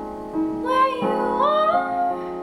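A woman singing over digital piano chords. The piano strikes new chords about a third of a second and one second in; the voice comes in just after half a second with a phrase that climbs in pitch toward the end.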